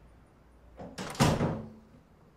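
Hotel room door being pushed shut: a light knock, then a sharp bang as the door meets the frame and latches, about a second in, fading quickly.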